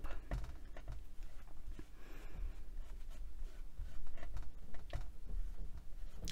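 Wet wipe with alcohol rubbed over a small block of polymer clay, cleaning black alcohol ink off its outside: soft scuffing with small taps and clicks, a little louder about two-thirds of the way through.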